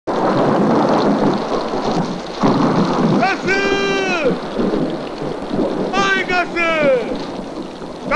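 Heavy rain in a thunderstorm, with thunder: a steady downpour that swells sharply about two seconds in. A voice shouts out twice in long, falling calls over the storm.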